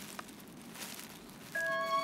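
Faint hiss, then soft background music of long held string-like notes comes in about three-quarters of the way through and becomes the loudest sound.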